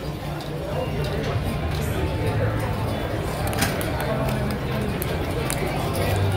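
Casino floor background: indistinct voices of other people under a steady low hum, with a few faint scattered clicks.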